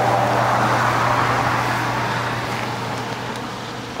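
A vehicle passing on a snowy street: its road noise is loudest at the start and fades steadily away, over a steady low hum.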